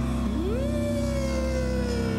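Live rock band's electric guitars holding a sustained chord. About a third of a second in, one guitar note slides up and then slowly sags in pitch.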